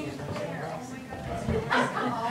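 Murmur of people chatting in a small room between songs, with one short, louder, sharp vocal sound, bark-like, near the end.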